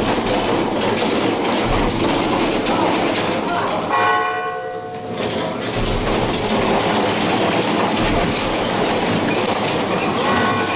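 Loud, continuous clattering din of a temple procession, with a short pitched horn-like tone showing through a dip about four seconds in.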